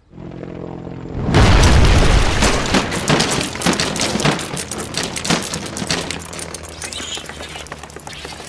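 Edited sound effects: a rising swell, then a heavy boom a little over a second in, followed by a dense clatter of knocks and crashes, like wooden crates tumbling, that slowly thins out.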